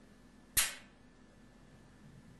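A single sharp kiss, a smack of the lips, about half a second in.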